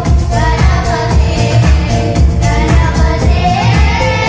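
Children singing a Tamil medley song into microphones over an amplified backing track with a steady bass beat.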